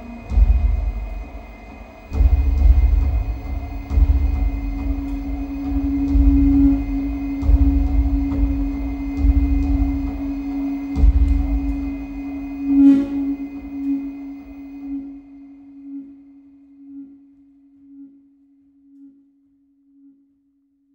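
Electronic sound score: a sustained low tone over deep rumbling swells. After about twelve seconds the rumble drops away, leaving the single tone, which pulses more and more faintly and fades out.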